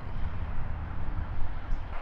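Low, uneven outdoor background rumble with no voice, mostly deep noise without any distinct pitch.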